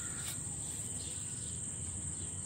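Crickets trilling in one steady, unbroken high-pitched drone over a low rumble, with a brief click about a quarter second in.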